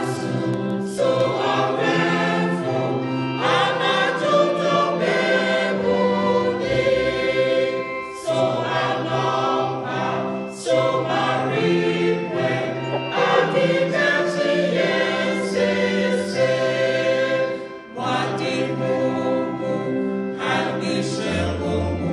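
A mixed church choir singing a hymn in harmony, phrase by phrase, with short breaks between phrases.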